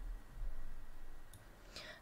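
A faint computer mouse click, about a second and a half in, over low room hum.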